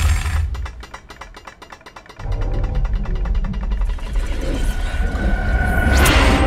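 Trailer sound design: a fast, even series of mechanical clicks, with a deep rumble swelling in about two seconds in and building toward the end.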